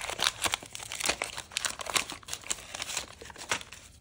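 Wax-paper wrapper of a 1989 Topps trading-card pack crinkling and tearing as it is pulled open by hand. It makes a dense run of crackles that stops shortly before the end.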